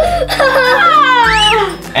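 A child's high-pitched, drawn-out squeal of excitement whose pitch slides up and down, over background music.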